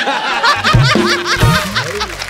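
Studio audience and cast laughing loudly after a punchline, over a short burst of comic music with two low beats in the middle.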